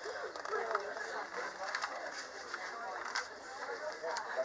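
Indistinct background voices, with paper rustling and crinkling as the pages of a colouring book are flipped.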